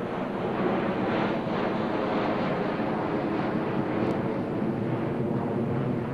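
A steady engine drone with a rushing noise, holding an even level throughout, with a faint click about four seconds in.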